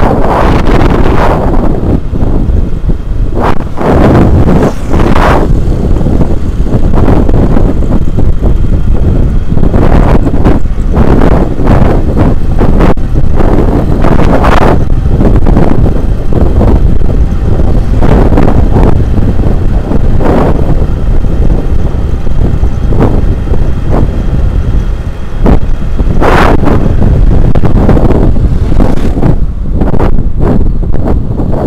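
Heavy wind rumble on the microphone of a camera riding on a moving motorbike, with road and engine noise beneath it and several louder surges along the way.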